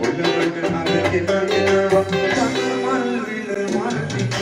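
Electric guitar playing a melody over a backing track with bass and drums, a few notes bent near the middle.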